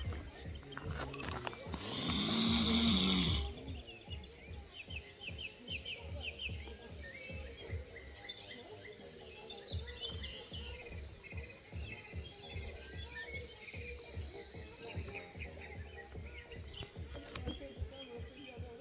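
Small birds chirping and trilling in the background throughout, with one loud, rough, hissing sound lasting about a second and a half near the start.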